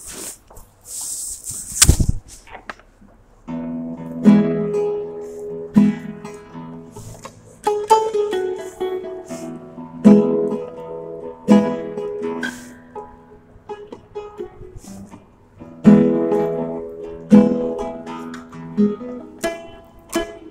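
Handling noise and a sharp knock, then an acoustic string instrument strummed in chords from about three and a half seconds in, with strong strokes roughly every second and a half.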